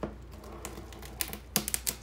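Clear plastic wrap crinkling as it is stretched and pressed around a sneaker, in a string of sharp crackles that come thickest in the second half.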